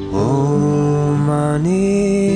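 Acoustic guitar song with a man singing one long wordless note in a chant-like style, the note sliding up in pitch near the end.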